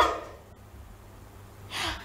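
A woman's last word fades out, then near the end she takes one short, sharp breath in through an open mouth, an audible gasp before speaking again.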